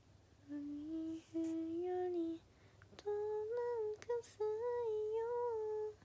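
A young woman humming a tune: a short lower phrase, then after a brief pause a longer, higher phrase, broken for a moment about four seconds in.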